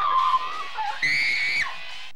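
A held sung note trails off, then about a second in comes a loud, high-pitched scream lasting about half a second, over faint music.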